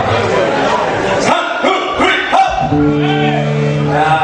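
Voices shouting and whooping in a concert hall, then about three seconds in the band strikes and holds a steady note.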